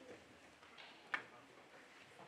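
Quiet auditorium room tone with faint scattered small noises and one sharp click a little past the middle.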